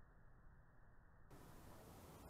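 Near silence: a faint hiss that opens up to a brighter, fuller hiss a little over a second in.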